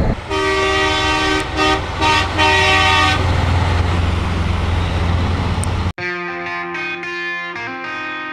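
Semi-truck air horn sounding in a few quick blasts over a low engine rumble. About six seconds in, the sound cuts sharply to guitar music.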